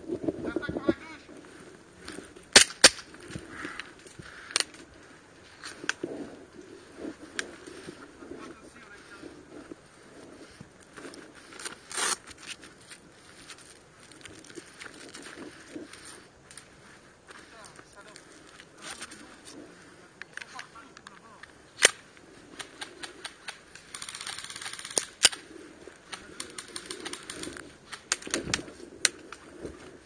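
Scattered airsoft gunfire: single sharp cracks and clicks at irregular intervals, the loudest two close together a few seconds in and another about two-thirds of the way through, with a brief hissing stretch of quick clicks just after it.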